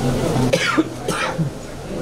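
Two short, harsh throaty bursts from a person close to the microphone, about half a second apart, over background talk.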